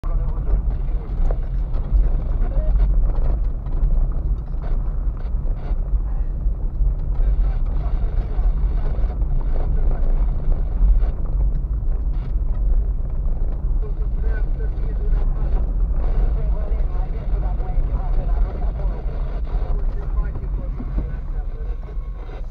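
Car interior noise while driving slowly over a rough dirt and gravel road: a loud, steady deep rumble of engine and tyres, with occasional small knocks.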